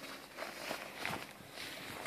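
Canvas door flap of a tent cot rustling as it is unrolled and let down over the entrance, with a few soft knocks of fabric and frame about halfway through.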